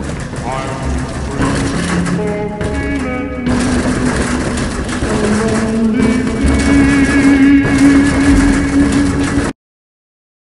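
Film score of sustained pitched tones over a noisy bed, with a wavering voice-like line, swelling louder and then cutting off suddenly near the end.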